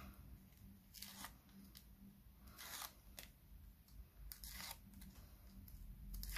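Backing paper being peeled off strips of adhesive tape on a paper card panel: several faint, short rustles and crackles.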